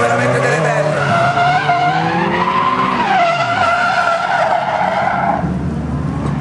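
Drift cars sliding through a corner: tyres squealing in a steady, wavering wail over engines revving up and down at high rpm. The squeal stops about half a second before the end.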